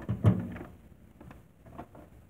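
A dull thump about a quarter second in, followed by a few faint light clicks.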